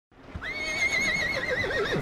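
A horse whinnying: one long, high, quavering call whose pitch drops toward the end.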